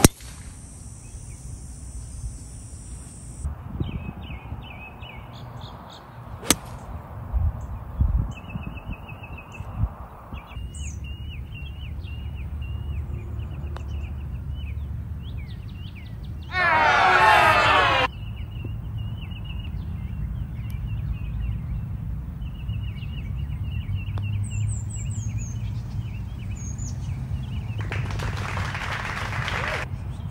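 A sharp crack of a golf driver striking the ball off the tee at the very start, then birds chirping repeatedly over a steady low rumble. About halfway through, a loud noisy burst lasts about a second and a half.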